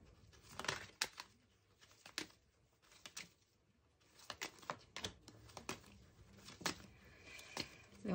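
Tarot cards being handled: scattered crisp flicks and snaps of card stock, about ten in all, with a short lull a little before the middle, and a card laid on the wooden table in the second half.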